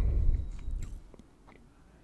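A few faint, sharp computer mouse clicks as on-screen text is selected, over a low rumble that fades out within the first second.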